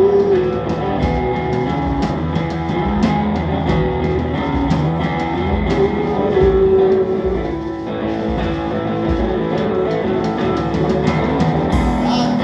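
Live rock played on electric guitar through an amplifier and a drum kit, with regular kick and cymbal hits under sustained guitar notes; the playing eases briefly about eight seconds in.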